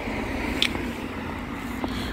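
Road traffic: a car driving along the road close by, a steady rush of tyre and engine noise.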